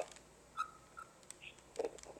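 A quiet pause with a few faint, short sounds: a brief high tone early in the pause and a short murmured voice near the end.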